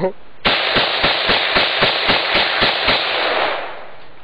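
Rifle firing a rapid burst, about four shots a second for roughly two and a half seconds, the reports ringing on briefly after the last shot.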